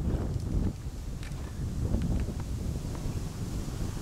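Wind buffeting a handheld camera's microphone: an uneven low rumble, with a few faint clicks.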